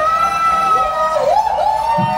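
A live rock band in a sparse passage without drums: one long held melodic note that bends down and back up in pitch about a second in.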